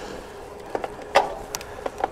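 Bicycle riding on a tarmac road: steady rolling and wind noise with a faint hum, broken by a handful of sharp clicks and knocks from the bike. The loudest knock comes a little over a second in.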